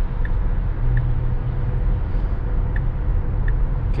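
Steady road and tyre noise heard from inside the cabin of an electric Tesla Model S Plaid at highway speed, about 52 mph. It is a low, even rumble with a faint steady hum above it.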